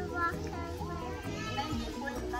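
Young children's voices talking and calling out over background music with steady held notes.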